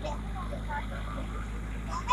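A steady low hum, with faint distant voices.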